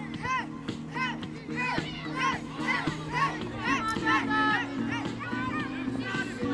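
Many children's voices shouting and calling out during a youth football game, over background music with low sustained chords that change a few times.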